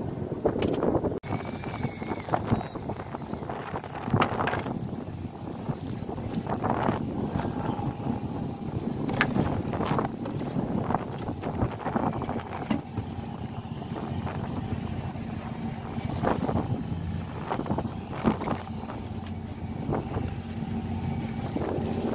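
Steady low hum of a fishing boat's engine, with wind buffeting the microphone and scattered knocks and clicks from the boat and tackle.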